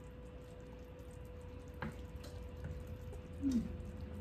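Chickpeas in tomato sauce simmering softly in a stainless steel pan, with a faint steady hum underneath and a single click of the wooden spatula against the pan about two seconds in.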